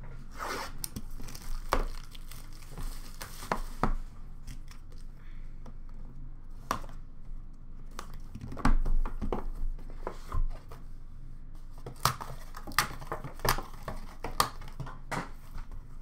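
Plastic shrink-wrap being torn off and crinkled as a sealed trading-card box is opened by hand, with irregular sharp taps and knocks of the box and its contents against a glass counter.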